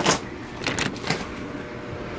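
Plastic fish-shipping bag with water being handled: a sharp rustle right at the start, then a few faint rustles and knocks.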